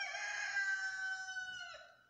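A rooster crowing: one long call lasting nearly two seconds, dropping in pitch at the end.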